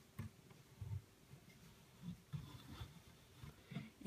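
Near silence with a few faint, soft bumps from a plastic LEGO model being handled and turned in the hand.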